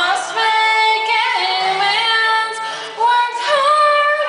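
A woman singing a cappella through a microphone, holding long sustained notes that slide between pitches.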